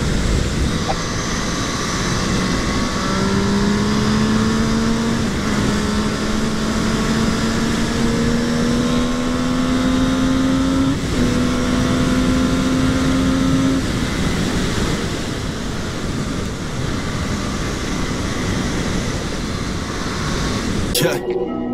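MV Agusta Brutale 675's three-cylinder engine pulling steadily, its note rising slowly through the revs, under heavy wind rush. The note breaks briefly about eleven seconds in, carries on, then fades into the wind a few seconds later.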